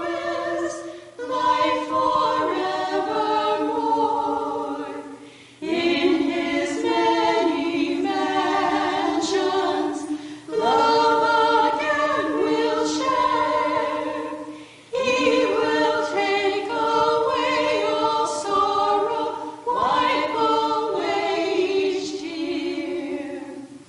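A small women's vocal group, four voices, singing together in phrases of about four to five seconds with brief breaths between them.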